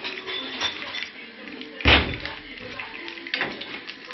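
Small clicks and knocks of kitchen things being handled while a spoon is fetched, with one loud bang about two seconds in.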